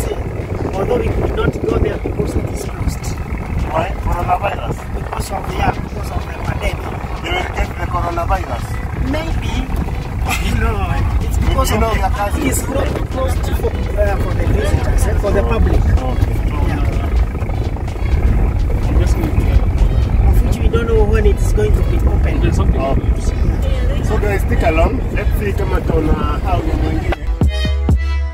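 Cabin noise of a Toyota safari van driving on a dirt track: a steady low rumble of engine and tyres, growing a little louder about halfway through. People talk indistinctly over it.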